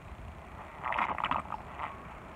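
Plastic gold snuffer bottle sucking water and gold flakes out of a gold pan: a short gurgling slurp about a second in as air and water rush up the tube, with a smaller slurp near the end.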